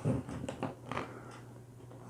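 Faint crackling and rubbing of boxboard and tape as hands press a taped paperboard box frame together, dying away after about a second.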